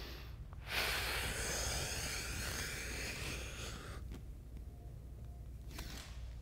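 A man's long, breathy exhale, lasting about three seconds, as he lowers himself into a stretch.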